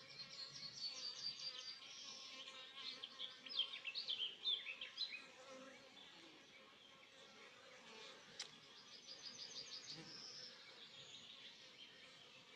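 A songbird singing two phrases of rapid, high repeated notes that run into falling slurred notes, over a faint steady hum of honeybees around open hives. A single sharp click comes in the second half.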